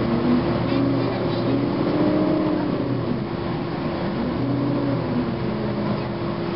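Inside a 2009 Gillig Advantage low-floor bus under way: its Cummins ISM diesel and Voith transmission run with a steady hum, and whining tones rise and fall as the bus changes speed.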